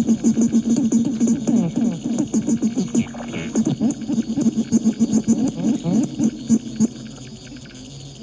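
Amazon Echo Dot smart speaker putting out a fast, garbled, warbling electronic sound with pitches sliding up and down, cutting out about seven seconds in. The owner takes it for the speaker malfunctioning and acting weird.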